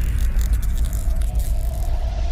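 Intro logo sound effect: a deep, steady rumble trailing on from a whoosh-and-boom hit, with a faint held tone coming in about a second in.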